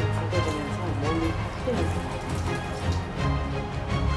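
Background music with a steady bass, over a young spot-billed duck's soft chattering calls in the first couple of seconds and light splashing of water in a basin.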